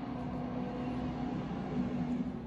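A steady low mechanical hum with a few faint higher overtones, like a motor or appliance running.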